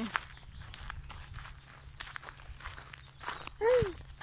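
Footsteps on a gravel path, faint and irregular. Near the end, a woman's brief exclamation.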